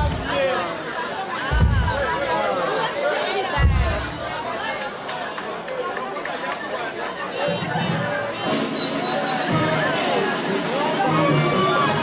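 Crowd chatter and shouting at a live show over music, with a few deep bass thumps and a brief high whistle-like tone near the end.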